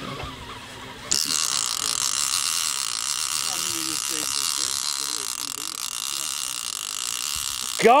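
Large conventional fishing reel's drag paying out line with a steady buzzing whir that starts about a second in: a hooked white sturgeon is taking line.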